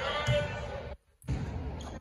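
Basketball being dribbled on a hardwood gym floor during play, with voices in the gym. The audio cuts out suddenly for a moment about a second in.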